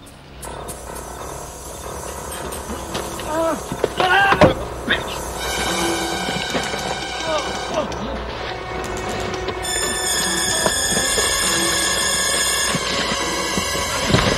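Tense film score of sustained tones that swell and grow louder, under the grunts and cries of two men struggling. The loudest cry comes about four seconds in.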